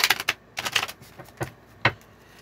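Tarot cards being shuffled and handled: quick runs of crisp clicks and slaps, followed by two single snaps.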